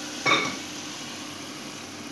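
Semolina halwa sizzling and bubbling in ghee in a pan as it thickens and is stirred with a spatula, with one short sharp sound about a quarter second in.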